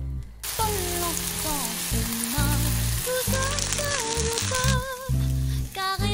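Kimchi fried rice sizzling hard in a hot nonstick frying pan as a liquid seasoning is poured over it. The sizzle starts about half a second in and dies down at about five seconds, over background music.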